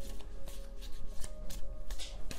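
A tarot deck being shuffled by hand: an irregular run of crisp card flicks and taps. Faint background music holds a steady note underneath.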